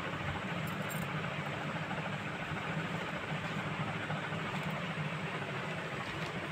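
Steady low background hum, even and unchanging throughout.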